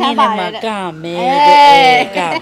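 A woman's speech that turns into one long, drawn-out vocal sound about a second long, rising a little in pitch and then falling, louder than the talk before it.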